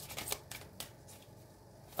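Tarot cards being shuffled by hand: a quick run of card flicks and taps in the first second, then the shuffling pauses and goes quiet in the second half.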